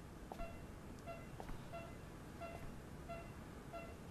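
Bedside patient monitor beeping faintly: a steady, even series of short, high beeps.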